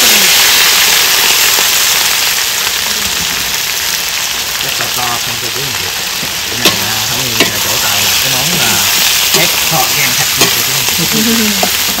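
Food sizzling and frying in a hot pan, loudest at first and easing a little. Two sharp clicks about halfway through.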